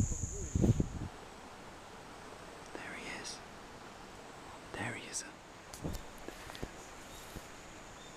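An insect's steady high-pitched trill that stops about a second in, then faint outdoor background with a couple of soft whispers.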